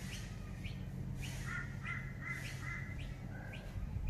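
Birds chirping over a low steady hum. One bird repeats a short rising chirp about twice a second, and a second, warbling call joins it for about a second and a half in the middle.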